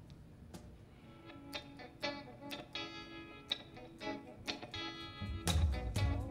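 Live band music: an electric guitar picking separate notes that ring out, quiet at first, then the band's low end (bass) comes in loudly near the end as the song gets going.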